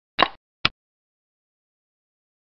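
Xiangqi board program's piece-move sound effect: two short clicks about half a second apart, the first slightly longer, as a piece is moved on the board.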